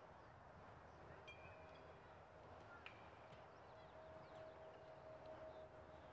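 Near silence: faint outdoor background with a faint steady tone from about a second in and a few faint, short high chirps.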